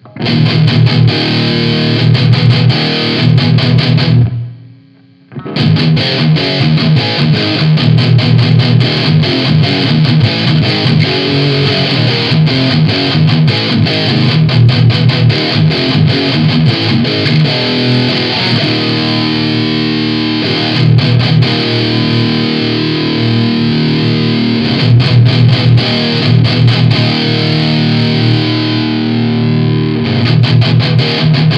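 Electric guitar played through a high-gain distortion pedal, continuous distorted metal riffing with a strong low end that is called messy. About four seconds in the playing stops for roughly a second, then starts again.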